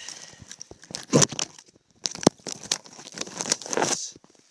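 Close rustling and crinkling handling noise, with sharp clicks a little over one second and a little over two seconds in.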